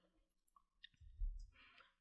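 A few faint computer keyboard clicks as quotation marks are typed, with a soft low thump about a second in, against near silence.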